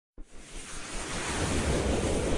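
A whooshing swell of noise, the riser sound effect of an animated logo intro. It starts suddenly just after the beginning and grows steadily louder.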